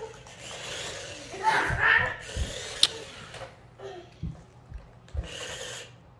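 Small electric motors of toy remote-control bumper cars whirring as they drive across a hardwood floor, with a few short low knocks and one sharp click about three seconds in.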